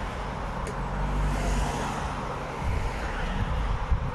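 Road traffic: cars driving past on the road, a steady tyre and engine rumble that swells as one car goes by about a second in.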